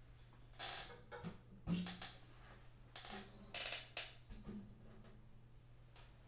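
Acoustic guitars being handled while one is swapped for another: scattered soft knocks and rustles against the wooden bodies, some followed by faint brief string ringing.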